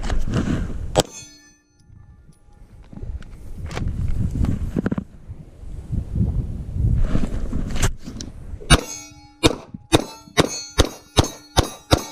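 Glock pistol shots hitting steel targets, each answered by the steel plate ringing. A single shot and ring come about a second in, then a rapid string of about ten shots in the last three seconds, about three a second.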